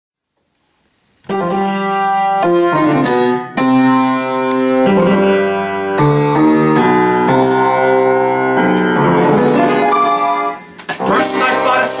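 Silence, then about a second in a piano starts playing a chordal intro of struck notes. Near the end a man's voice begins singing over the piano.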